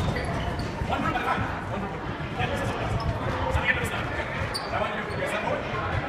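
Many sneakered feet thudding and shuffling on a hardwood gym floor as a group of players walks and settles into a line, with indistinct voices in the hall.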